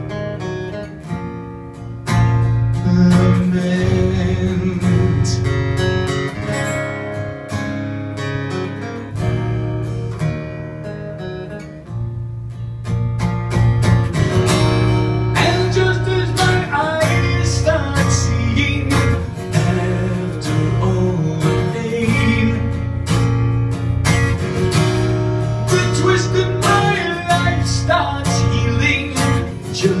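A single guitar played live through an amplifier, strummed chords and picked melody lines in an instrumental passage between verses. The playing eases off for a couple of seconds around the middle, then builds up louder again.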